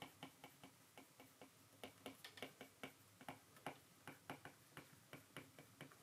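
Second-generation Apple Pencil's plastic tip tapping and ticking faintly on the iPad's glass screen during handwriting: light, irregular clicks, a few a second, busiest from about two seconds in.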